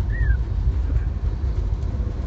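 Steady low rumble of engine and road noise inside the cab of a large vehicle moving at highway speed. A brief high chirp comes about a quarter second in.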